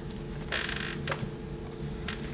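Paperback books being handled: a short rustle of paper about half a second in and a few light clicks and taps as one book is set down and the next picked up, over a steady low hum.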